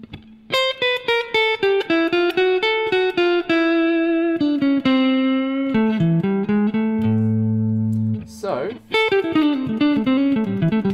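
Stratocaster-style electric guitar playing a jazzy single-note line. It opens with a quick run of picked notes stepping downward, slows into a few longer notes ending on a held low note, and starts another quick phrase near the end.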